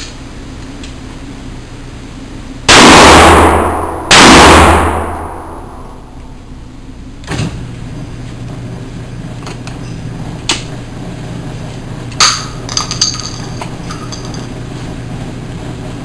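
Two loud shots from a Russian-made Remington Spartan double-barrel 12 gauge shotgun loaded with 00 buckshot, fired one barrel at a time about a second and a half apart, each ringing on in the indoor range. Several light metallic clicks follow as the gun is handled.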